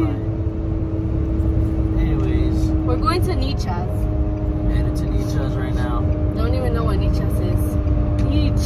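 Low road and engine rumble inside a car's cabin while driving, with a steady hum under it and a few short bits of speech.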